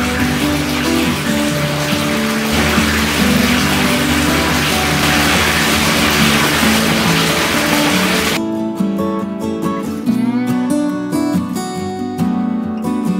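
Hot-spring water pouring from a stone spout into a bath, a steady rushing splash that stops abruptly about eight seconds in. Acoustic guitar background music plays throughout.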